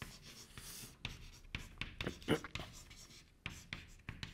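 Chalk writing on a blackboard: a quick, irregular run of short scratches and taps as a word is written out.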